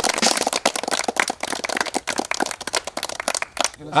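A small group of people clapping their hands, many quick irregular claps running together.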